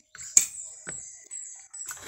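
Eating at a table: a sharp clink of a utensil against a dish about a third of a second in, and a second, softer click just under a second in, between quiet chewing. A steady high-pitched whine runs underneath.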